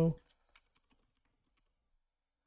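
A few faint computer keyboard keystrokes in the first second, then near silence.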